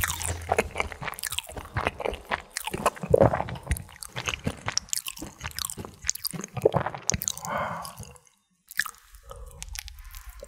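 Close-miked eating: crunching and squishy, wet chewing of fried snack food in quick clicky bites. About eight seconds in the sound cuts out briefly, then a bite into a glazed sausage and rice-cake skewer (sotteok).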